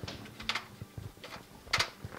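A few soft clicks and knocks as a light bar is moved down inside a photography lightbox, the loudest near the end.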